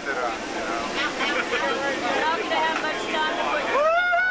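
Many skydivers shouting and whooping together over the steady noise of the Boeing 727's engines and slipstream through the open exit, with one loud yell rising and falling in pitch near the end.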